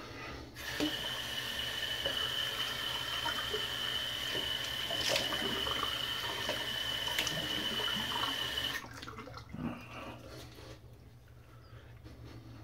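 Tap water running into a sink with a thin steady whistle while a lathered face is rinsed between shaving passes. The tap is shut off about nine seconds in, and a few quieter splashes follow.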